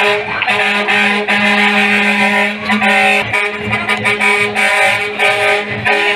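Air horn sounding in one long, steady two-tone blast, broken briefly about three seconds in.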